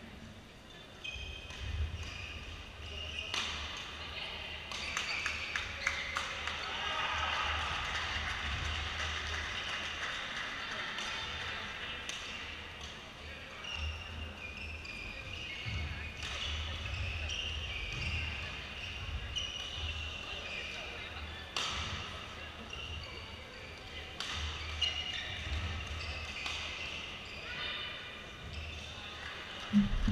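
Badminton rally: sharp cracks of rackets striking the shuttlecock every second or few, with players' feet thudding on the court floor, echoing in a large sports hall. Voices are heard in the background.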